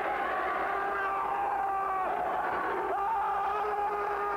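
Wrestling arena crowd noise with long, steady held tones over it that change pitch every second or so, and a low hum underneath from the VHS recording.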